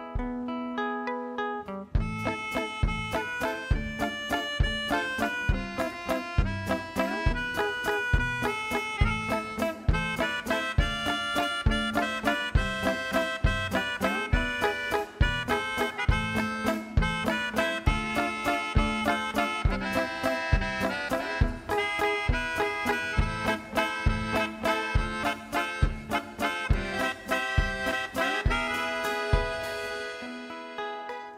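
Live band playing an instrumental break of a waltz, led by accordion over acoustic guitar and drums with a steady beat. The full band comes in about two seconds in.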